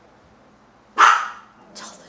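A dog barking once, a single loud, sharp bark about a second in.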